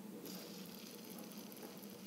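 Faint, steady whirring hiss of a fidget spinner's bearing as the black spinner turns between the fingers.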